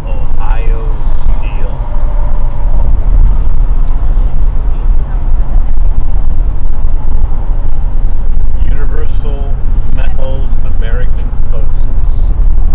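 Steady, loud low rumble of road and wind noise heard from inside a car's cabin cruising at highway speed.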